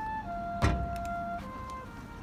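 Marching band field-show music in a soft passage: a few clear, held tones that change pitch, with one sharp percussion hit with a deep low end about two-thirds of a second in.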